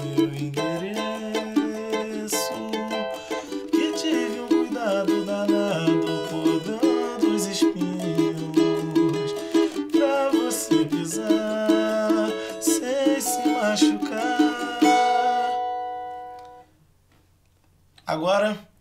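Cavaquinho strummed in a pagode rhythm, with a man's low voice singing along beneath it. About fifteen seconds in, a final chord is left ringing and fades away.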